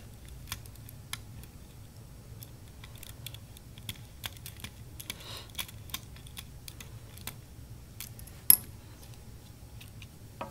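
Small precision screwdriver working tiny screws out of an electronics board: scattered light metal clicks and ticks as the driver turns and the screws loosen, with one much sharper click about eight and a half seconds in.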